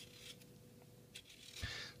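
Faint scraping strokes of a Y-shaped vegetable peeler taking the skin off a raw potato, a few short strokes with a longer one near the end.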